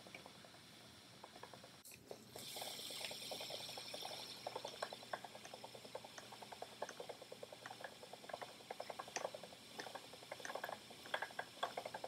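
Wooden treadle spinning wheel running: light, irregular clicking and ticking from its moving parts, with a soft whir from the spinning flyer starting about two seconds in.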